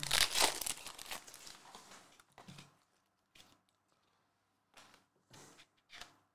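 A foil trading-card pack (2021-22 Panini Mosaic basketball) torn open by hand, the wrapper crinkling loudest at the start and fading over about two seconds. A few faint rustles follow as the cards are handled.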